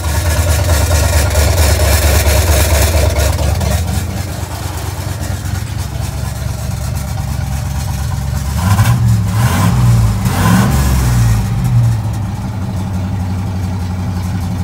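1967 Chevy C50 truck engine running at a fast idle, heard from inside the cab. Its pitch rises and falls a few times about nine to eleven seconds in, as it is revved lightly.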